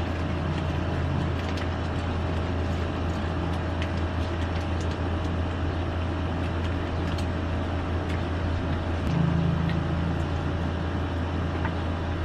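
Steady low hum with an even background noise, and a few faint clicks over it.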